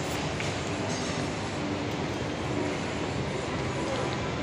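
Steady mechanical rumble and hum of a running mall escalator, with no voices over it.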